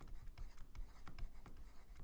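Faint scratching and light ticks of a stylus writing a word on a drawing tablet, several small strokes a second.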